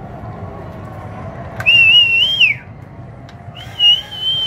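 Two loud, high whistles. Each holds a steady pitch with a slight wobble for about a second and then slides down at the end. The first starts about one and a half seconds in; the second begins near the end.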